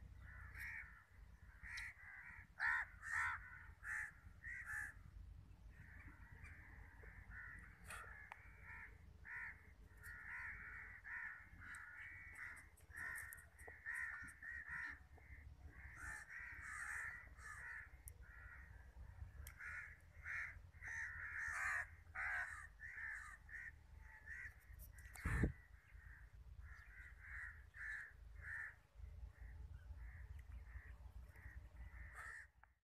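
Long-tailed shrike giving repeated harsh calls in quick runs, several a second with short breaks between runs. A single sharp knock late on is the loudest sound.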